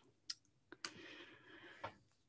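A few faint computer clicks over near silence while the presentation slide is being advanced.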